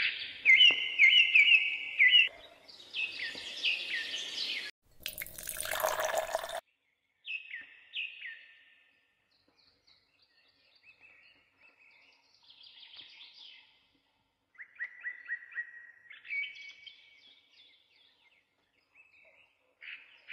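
Birds chirping and singing in short repeated phrases, loudest in the first few seconds and fainter later. A brief rushing noise lasting about a second and a half comes about five seconds in.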